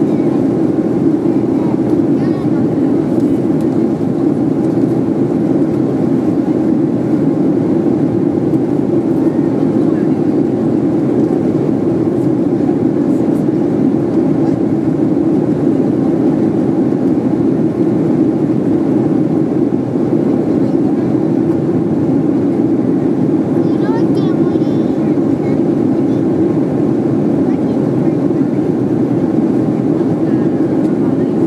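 Steady cabin noise of an airliner in cruise flight: a loud, even rush of engine and airflow noise, low in pitch, unchanging throughout.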